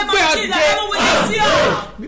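A woman shouting in fervent prayer, her voice rising in the second half into a long, loud, strained cry that stops suddenly.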